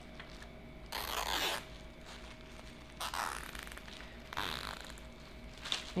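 Nylon cable tie being zipped tight around a bundle of folded tissue paper: three short ratcheting rasps, about a second apart or more.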